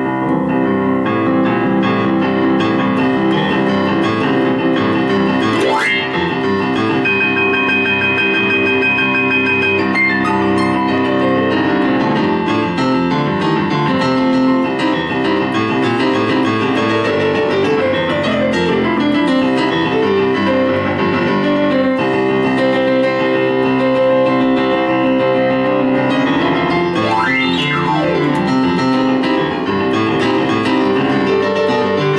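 Digital piano played with both hands, a full, unbroken stream of chords and runs at a steady loudness.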